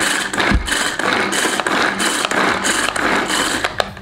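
Pull-cord plastic hand chopper with three stainless steel blades, worked with quick repeated pulls of the cord. Each pull spins the blades inside the plastic bowl as they chop eggplant, a couple of strokes a second.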